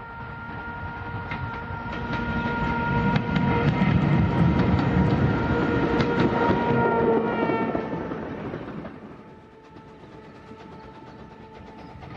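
A brass band holding a single note while riding on a passing steam train, with the train's running noise and wheel clicks. The sound swells as the train approaches and fades as it goes away, and the note drops in pitch about eight seconds in as the train passes: the Doppler effect.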